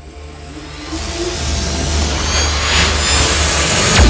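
An animated-logo transition sound effect: a hissing whoosh over a low drone that swells steadily louder from about a second in, building toward the logo reveal.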